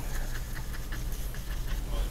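Steady low hum with the faint scratchy swish of a flat paintbrush being worked over the painting's surface.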